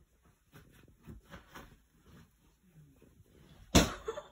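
Soft rustling and bumping of bedding as a golden retriever humps a pillow on a bed, then one loud, sharp thud near the end as the dog tumbles off the bed and lands on the floor.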